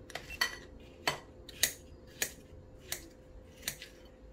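Repeated sharp clicks of a GoPro Hero 8's button being pressed over and over, about one press every half-second to second, while the camera freezes and does not respond: the SD-card error the camera keeps throwing with this memory card.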